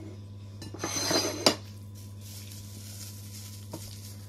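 Dishes and a plastic-wrapped food item handled on a kitchen table: a rustle and clatter about a second in, ending in one sharp knock, then a light click near the end.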